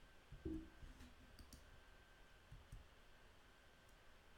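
Near silence: room tone with a few faint low thumps, the strongest about half a second in, and a couple of soft ticks.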